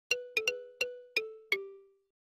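Short intro jingle of six bell-like chime notes, each struck and ringing away, the second and third close together, stepping slightly lower in pitch toward the end, the last note ringing out longest.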